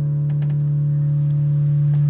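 A steady low hum, with fainter higher tones held above it and a few soft clicks.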